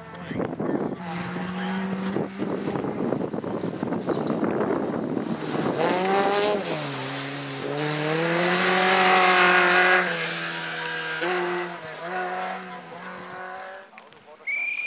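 Rally car engines at full throttle on a gravel stage, revving up and dropping at each gear change, loudest as a car passes close about eight to ten seconds in, with the rush of tyres on loose gravel in the first few seconds.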